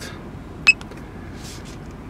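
A single short, high click-beep from a button being pressed on a G-Tech Pro performance meter, about two-thirds of a second in, over a low steady background hum.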